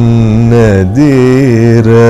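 A man singing Carnatic raga Kalyani, most likely a line of its ata tala varnam, every note waved with gamakas so the pitch keeps sliding and oscillating. There is a brief break in the voice just before a second in.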